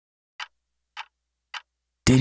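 A count-in: three sharp, evenly timed clicks about 0.6 s apart, over faint low hum, setting the tempo for the song.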